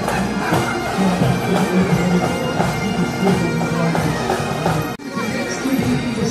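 A pipe band's bagpipes playing a tune over their steady drones, with a sudden brief dropout about five seconds in.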